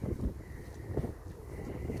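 Wind buffeting the microphone outdoors: a low, uneven rumble, with a faint steady high tone behind it.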